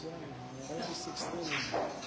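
Indistinct background chatter of men's voices, with no clear words.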